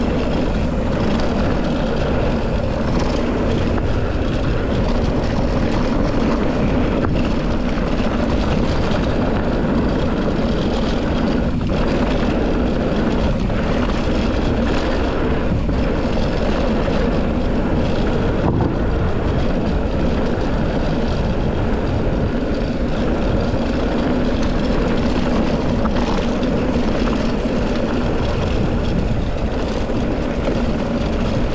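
Steady wind rushing over the camera microphone together with mountain bike tyres rolling over a dirt-and-gravel trail, an unbroken loud rumble with no letup.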